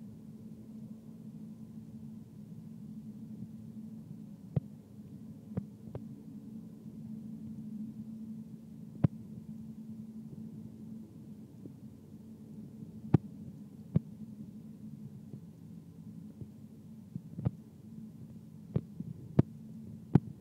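A steady low hum with about ten sharp clicks at irregular intervals.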